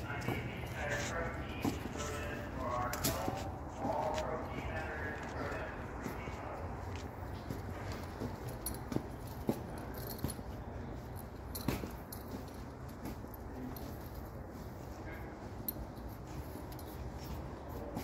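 Faint background voices for the first few seconds, then steady ambient noise with a few scattered light clicks.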